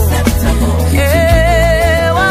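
Gospel song: a woman's singing voice over a band with steady bass, her line gliding down at the start and then a long held note with vibrato from about a second in.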